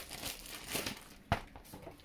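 Thin clear plastic bag crinkling and rustling as a pair of sneakers is handled and pulled out of it, with one short sharp tap a little past halfway.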